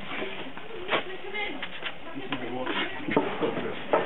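Several people talking in the background, with a few sharp knocks: one about a second in and two more near the end.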